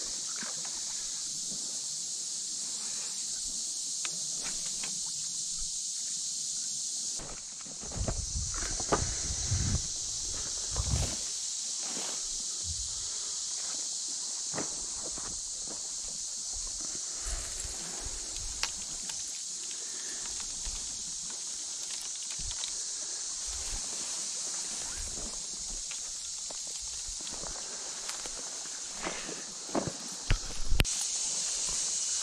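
Footsteps and rustling of someone walking through tall reeds and grass onto sand, heaviest about a third of the way in, with a few sharp clicks of handled gear, over a steady high-pitched hiss.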